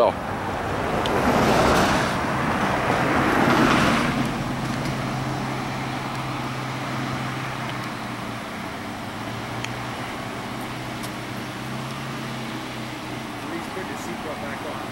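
Road traffic: a car passes, its tyre and engine noise swelling and fading between about one and four and a half seconds in, over a steady low engine hum from an idling vehicle.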